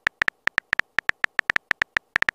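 Keyboard typing sound effect of a texting app: a quick, slightly uneven run of short, identical high clicks, about eight a second, one per letter as a message is typed out.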